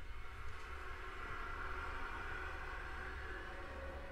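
Quiet, airy sustained texture from a contemporary chamber ensemble playing live, a hushed noise-like sound with faint held tones that swells a little in the middle and eases near the end, over a steady low rumble.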